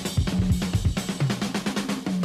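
Drum kit playing a break in a 1970s rock recording: quick snare, kick and rimshot strokes over sustained low notes, with no singing.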